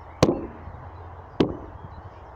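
Two sharp knocks about a second apart over a low steady rumble: handling bumps on the hand-held camera gimbal while walking.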